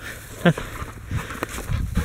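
A black dog moving through long grass at close range as it brings back a shot pigeon, with brushing and footfall sounds, and a man's short one-word command about half a second in.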